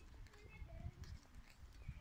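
Faint street ambience: small birds chirping in short whistled notes, over irregular low thuds from the camera-holder's walking, the loudest about a second in and near the end.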